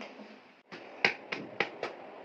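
Four sharp wooden knocks about a quarter second apart: a prop cleaver chopping on a block.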